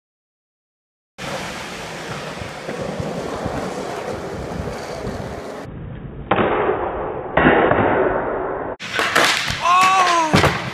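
After a second of silence, skateboard wheels roll on a concrete floor, then louder rough scraping as the board meets a low flat bar. Near the end come several sharp knocks as the board and the skater slam onto the concrete, with a shout.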